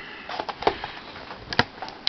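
Cardboard-and-plastic toy blister pack being handled, with a few light scattered clicks and faint rustling.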